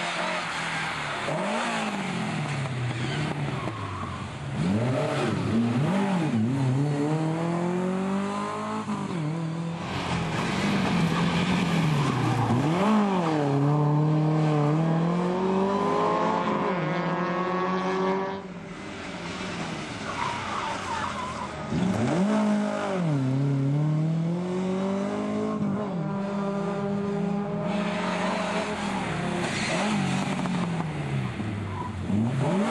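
Lada 2107 rally car engines revving hard through tight corners, one car after another. The engine note keeps dipping as the driver lifts and shifts down, then climbs steeply again under acceleration.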